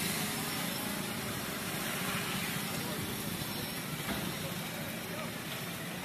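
Steady outdoor street noise with indistinct voices in it.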